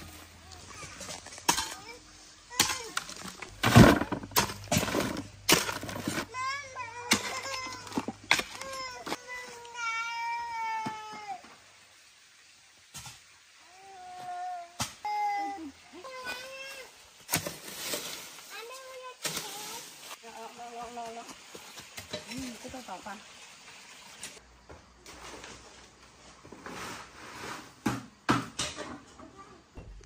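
A hoe blade chopping into the earth, with a string of sharp knocks in the first few seconds. A small child's high voice then calls out and sings or whines in wavering, wordless tones.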